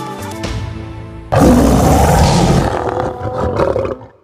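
Background music, then a lion's roar breaks in suddenly just over a second in, loud and lasting about two and a half seconds before it stops.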